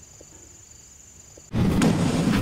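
Faint steady high chirring of crickets, cut off about one and a half seconds in by a sudden loud whoosh with a deep rumble: a video transition sound effect.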